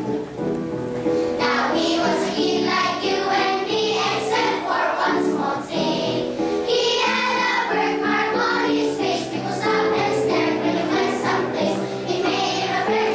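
Children's choir singing over an instrumental accompaniment; the accompaniment plays alone at first and the voices come in about a second and a half in.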